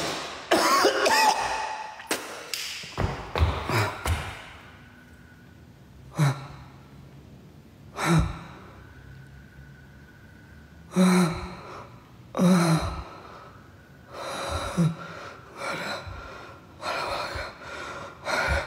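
A person gasping and groaning in heavy, ragged breaths. The gasps come thick over the first few seconds, then singly every couple of seconds. These are the sounds of someone who feels very weak.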